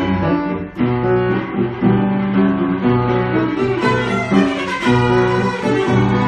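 Bush & Gerts white grand piano and a cello playing together, the cello's bowed notes over the piano's chords and runs.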